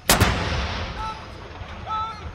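A 105 mm light field gun fires a single blank round of a ceremonial gun salute: one sharp, loud blast just after the start, with its echo rolling away over the next second.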